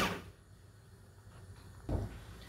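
Small electric food chopper's motor spinning down and stopping just after it has finished blending garlic. A single knock near the end.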